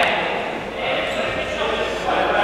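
Players' voices during a futsal game, with the ball being dribbled and bouncing on the floor, echoing in a large sports hall.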